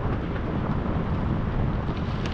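Wind rushing over the action camera's microphone while riding a bicycle, a steady low rush of noise with no distinct events.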